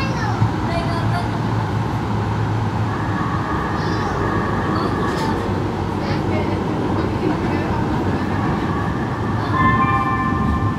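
Interior of an LA Metro light rail car running between stations: a steady rumble of the train on the track with a low hum. A thin high whine comes in for a couple of seconds around the middle and again near the end.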